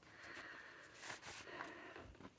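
Faint rustling and handling noise as a tarot deck is slid out of its box and handled, with a few soft scrapes about a second in.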